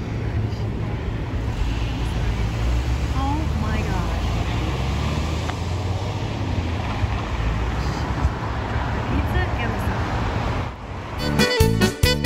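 Steady road traffic noise with a low rumble from a busy multi-lane street. About eleven seconds in it gives way to music with a steady beat.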